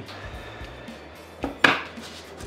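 Quiet background music, with a click and then a sharp metallic clack about one and a half seconds in as a steel plane iron and honing guide are handled on the workbench.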